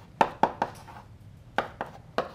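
Chalk tapping and striking a blackboard as a line of an equation is written: three sharp taps in quick succession, then two more after a pause.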